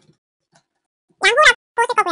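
A person's voice speaking, starting a little past halfway; before that, near silence with a few faint ticks.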